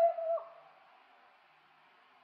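A soprano's held sung note, with a light vibrato, ends with a slight dip about half a second in, followed by a pause with only faint hiss from the old live recording.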